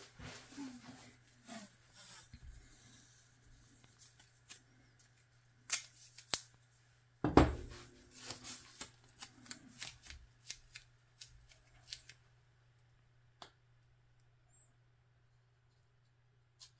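Painter's tape being pulled from the roll and handled while a strip is laid across a foam-board joint: scattered sharp clicks and rustles, the loudest coming about seven seconds in, over a faint steady low hum.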